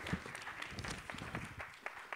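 Audience applauding, with scattered, uneven hand claps.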